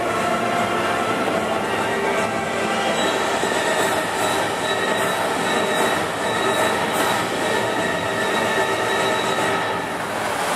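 A multi-jet lagoon fountain show: a steady rush of spraying water mixed with long, held tones from the show's loudspeakers, steady and loud throughout.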